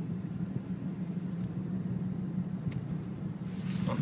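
Steady low drone of a car driving along a city road, heard from inside the cabin. Near the end a person lets out a breathy "Oh".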